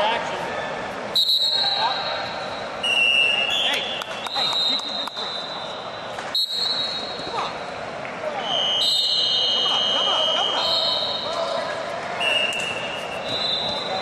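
Referee whistles from several mats blowing again and again, short and long steady high blasts at slightly different pitches that overlap, over the chatter of a crowd in a large hall. A few sharp knocks stand out, loudest about a second in and about six seconds in.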